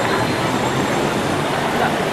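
Electric BTS Skytrain running past on the elevated viaduct overhead, a steady noise, with people's voices beneath it.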